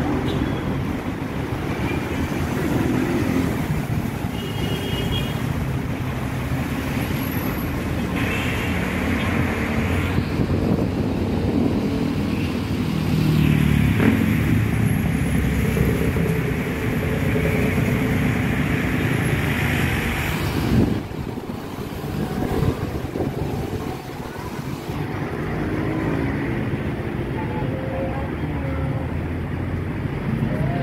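Road traffic passing below on a busy street: cars and motorcycles running, a continuous wash of engine and tyre noise that dips briefly about two-thirds of the way through.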